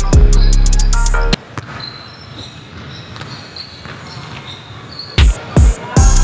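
Background music with a heavy bass beat that cuts out suddenly about a second and a half in, leaving a quieter stretch of room sound. Near the end, two loud sharp basketball bounces on a hardwood gym floor, about half a second apart.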